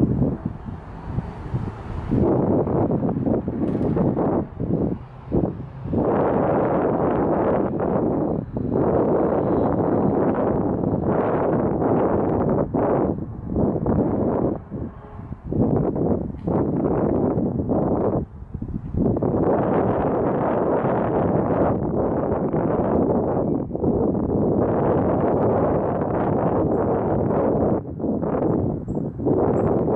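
Wind buffeting the microphone: loud, gusty noise that swells and drops away briefly several times.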